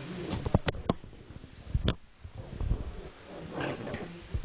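Handheld microphone being handled and switched on after being off: a quick run of sharp clicks and knocks in the first second, another knock about two seconds in, then low thumps and rubbing on the mic body.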